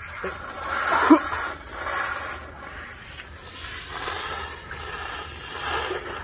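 Water from a garden hose pouring and splashing onto a man's head and face as he flushes pepper spray from his eyes, a steady hiss. A brief vocal sound comes about a second in.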